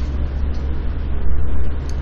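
Steady low hum with a faint even hiss: the background noise of a recording, with no other sound standing out.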